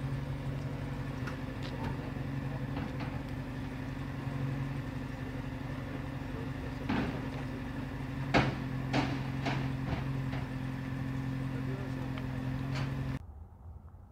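A vehicle engine idling steadily, with people talking and a few sharp knocks between about seven and ten seconds in. The sound cuts off suddenly near the end.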